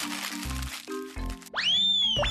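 Crinkling of a sheet being crumpled in the hands over background music. About a second and a half in, a comic sound effect follows: a quick rising whistle that then slides slowly down.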